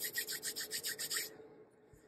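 Tarot cards being shuffled by hand: a quick, even run of about a dozen rasping strokes, roughly seven a second, that stops about a second and a half in.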